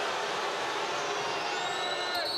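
Steady crowd noise of a large arena audience, an even roar, with a faint high tone rising in near the end.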